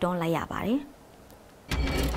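A woman's speech stops, and after a short pause a sudden swoosh with a deep rumble sets in near the end: a station-logo transition sound effect.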